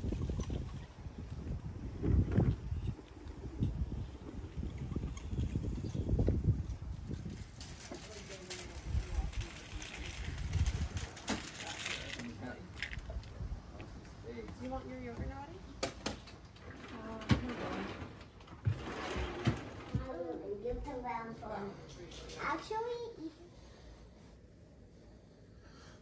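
Wind buffeting the microphone in gusts through the first half. In the second half, a young girl's quiet voice murmurs, among scattered clicks and rattles from a plastic toy stroller rolling over paving stones.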